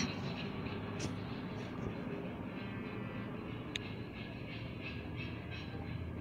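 Steady low room hum with faint, short scratches of a pen drawing a line on paper pattern, and one light tick near the end.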